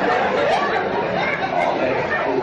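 Indistinct talking from several voices at once, chatter with no clear words.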